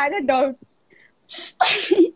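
A woman's voice breaking into a short laugh, then after a brief pause a sharp, breathy burst of air near the end.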